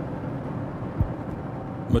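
Steady low background rumble and hiss of outdoor ambience, with one sharp thump about a second in.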